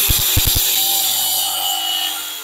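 Angle grinder grinding off a metal fitting on a wooden gate post, a steady high-pitched grinding hiss with a few low knocks early on, beginning to wind down near the end.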